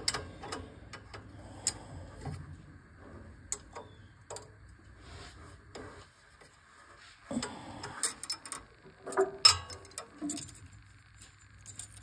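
Light metallic clicks and clinks of wrenches on the rocker-arm adjusting nut and lock nut of a Honda GX620's overhead valves, while the valve clearance is being set. They come at irregular moments, with a cluster of sharper clinks about eight to ten seconds in.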